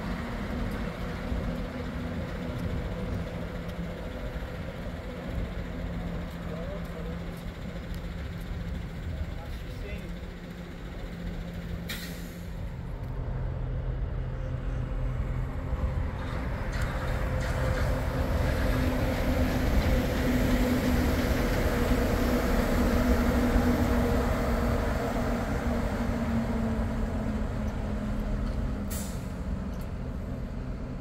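Walt Disney World Mark VI monorail train running along its elevated beamway: a steady low electric hum with rolling noise, swelling louder past the middle and easing off toward the end.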